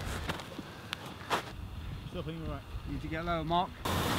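A voice calling out faintly twice, briefly about two seconds in and again near the end, with a couple of light knocks before it.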